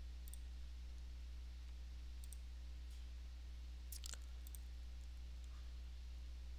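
A few faint computer mouse clicks, the loudest a quick pair about four seconds in, over a steady low hum.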